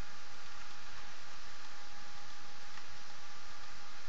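Steady recording hiss with a faint constant tone under it, and a single faint click near the end.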